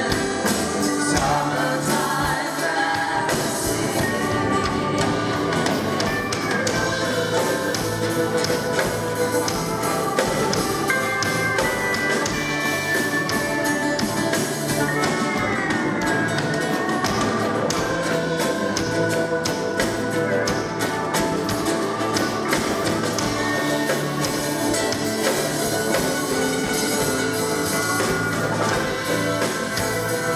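Live country band playing a song on stage, with drum kit, bass guitar, keyboards and an acoustic guitar carrying the melody.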